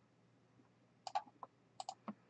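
A few short, faint clicks of a computer mouse and keyboard being worked, starting about a second in, some coming in quick pairs.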